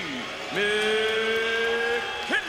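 A ring announcer's voice over the arena's public-address system, drawing out one long held note from about half a second in, in the stretched style used to call a fighter's name.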